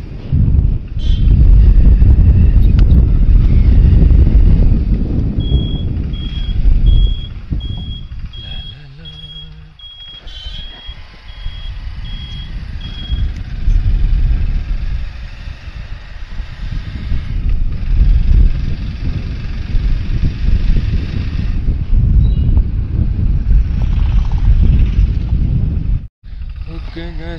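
Motorcycle on the move, its engine and road noise buried under heavy wind buffeting on the microphone. The rumble eases for a moment near the middle. For several seconds in the middle, a high beep repeats about twice a second.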